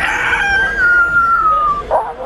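A long, high-pitched cry that slides slowly downward in pitch for nearly two seconds, then cuts off just before a short sound at the very end.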